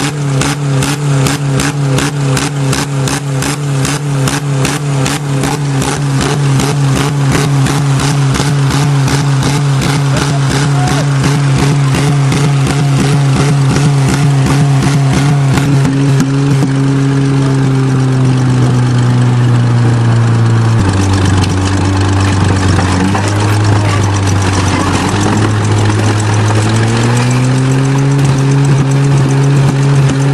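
Bulldozer's diesel engine running steadily. Its pitch drops suddenly about two-thirds of the way in and rises again near the end.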